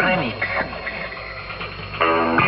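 Old tube radio's speaker playing while being tuned across the band: falling whistles between stations and snatches of a broadcast voice, dropping quieter toward the end. The set is freshly repaired, with a new EL84 output tube and capacitors.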